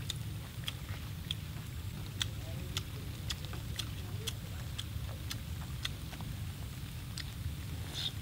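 Close-up chewing of grilled beef tongue: wet mouth clicks and smacks, about two a second and irregular, over a steady low rumble.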